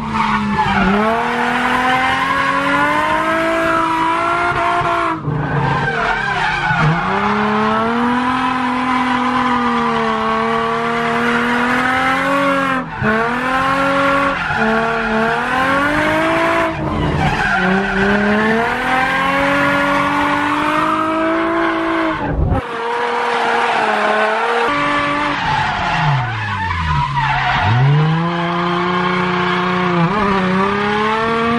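Drift car's engine, heard from inside the cabin, revving high and falling back in long repeated sweeps, with tyres squealing as the car slides sideways through the corners. The engine note cuts out sharply for a moment about four times as the driver lifts off or shifts.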